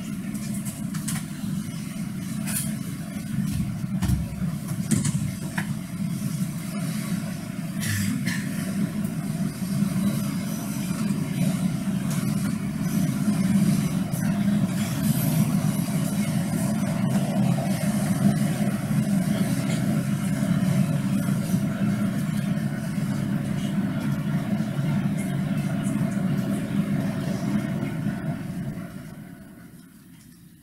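Steady low rumbling ambience, like traffic, that fades out near the end.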